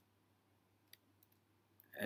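A few faint computer-keyboard keystrokes, the clearest about a second in, in otherwise near silence.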